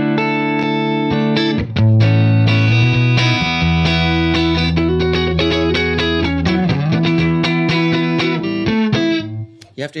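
Music Man Valentine electric guitar on its humbucker, played through a T-Rex Karma boost pedal into a Revv Dynamis amp's clean channel: a run of ringing, sustained chords, getting louder on a lower chord about two seconds in and stopping shortly before the end.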